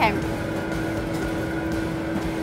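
Steady hum of commercial kitchen ventilation: one constant mid-pitched drone with fainter higher tones over a soft, even hiss.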